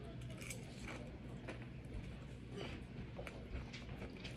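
Faint chewing of a mouthful of breaded fried shrimp: soft, irregular mouth clicks, over a steady low hum.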